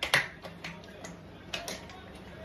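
Sharp clicks and light knocks of kitchen items being handled, four in all, the loudest right at the start.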